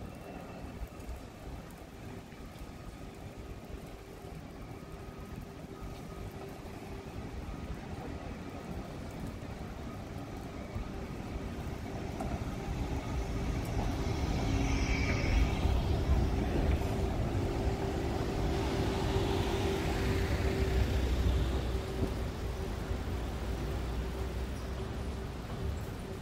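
City bus approaching along the street and passing close by: its engine and tyres grow steadily louder, are loudest from about fourteen to twenty-two seconds in, then ease off.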